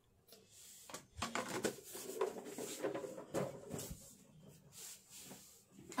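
Soft, irregular clicks and small knocks of hands handling craft supplies: a small styrofoam ball taken from a clear plastic jar and set down on a metal tin.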